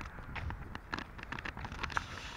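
Irregular small knocks and rustles from a handheld action camera being moved, with a low wind rumble on its microphone; a sharper knock comes near the end.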